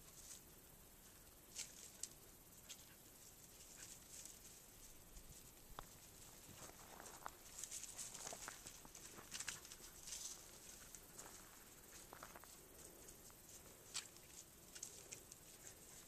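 Near silence broken by faint, scattered rustles and clicks, most of them between about 7 and 10 seconds in: a puppy moving through dry brush and stalks while searching.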